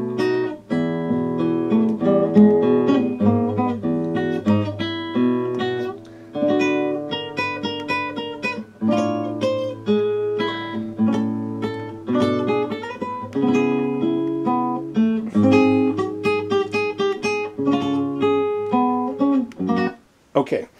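A recording of a classical guitar played fingerstyle, playing back. It runs as a steady stream of single plucked notes and chords, each ringing and dying away.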